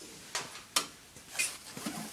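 Metal hand tools clinking and knocking together as they are picked through, about four short clinks, one ringing briefly.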